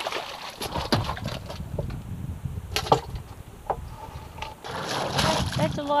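An arrowed tilapia splashing and flapping as it is hauled out of the water over a boat's side, with a few sharp knocks scattered through it.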